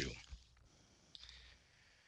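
Near silence in a pause between spoken sentences, with one faint short click a little over a second in.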